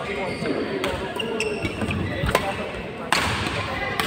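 Badminton rally: sharp racket hits on the shuttlecock and short squeaks of shoes on the court mat, the loudest hit a little after two seconds, over voices echoing in a large hall.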